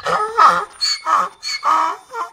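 Donkey braying: a rapid run of hee-haw notes, alternating higher and lower, about five in two seconds.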